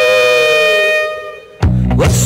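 Rock music: a saxophone holds a long note that sags slightly in pitch and fades away. About a second and a half in, the full band crashes back in with drums and bass.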